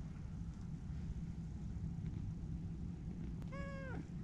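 A domestic tabby cat gives one short meow about three and a half seconds in, its pitch steady and then dropping at the end, over a steady low rumble.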